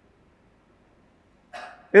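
Near silence in a pause of a man's speech; about one and a half seconds in, a brief short sound, then his voice starts again at the very end.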